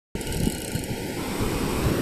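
Wind rumbling on the phone's microphone over the wash of surf at the water's edge, an uneven low rumble without clear tones.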